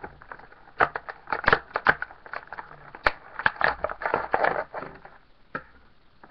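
Stiff clear plastic blister packaging crackling and cracking in irregular bursts as it is pried and pulled open by hand.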